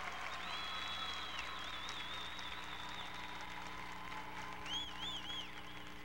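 Marching band playing a quiet passage, with high held notes that waver in pitch and a brief phrase of them about five seconds in, over a steady electrical hum.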